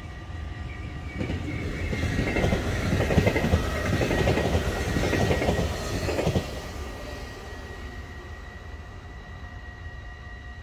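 Dutch NS yellow-and-blue double-deck electric passenger train passing at speed: a rush of wheels and air with a fast clatter of wheels on the rails that builds from about a second in, is loudest for the next five seconds, then drops off suddenly and fades as the train goes away.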